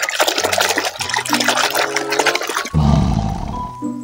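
Water splashing and sloshing in a basin as a plastic toy is scrubbed in soapy water, over background music with steady held notes. A deep rumble comes in near the end, about three seconds in.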